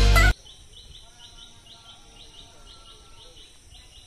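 Loud music ends abruptly at the very start. Then comes quiet outdoor ambience in which a bird repeats short, high, same-pitched chirps, several a second, over a faint steady high hiss.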